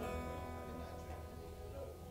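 Acoustic guitar strummed as a tuning check, the chord ringing on and slowly fading, judged "in tune-ish". A low steady hum runs beneath it.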